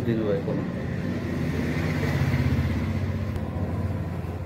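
A motor vehicle's engine running steadily, swelling a little in the middle, with a short burst of speech at the start.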